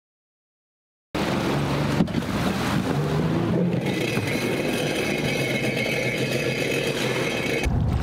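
Sea-Doo personal watercraft's engine and jet pump running with water rushing as it rides up onto a floating dock; the sound starts suddenly about a second in. Near the end it changes to a heavier low rumble.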